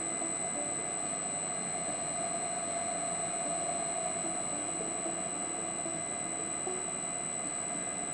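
Baldor three-phase induction motor running on a Reliance Electric SP500 inverter drive, with a steady high-pitched whine and a lower steady hum. The speed is turned up from about 560 to about 830 RPM and back down again.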